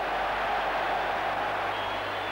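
Football stadium crowd noise, a steady, even murmur with no single shout or whistle standing out.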